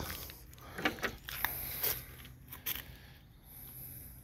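Faint handling noises: a few light clicks and scrapes in the first half, then quieter.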